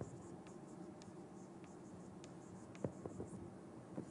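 Faint scattered taps and scratches of writing on a lecture board, with one sharper tap about three seconds in.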